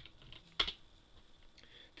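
A few faint clicks at a computer keyboard and mouse, with one sharper click about half a second in.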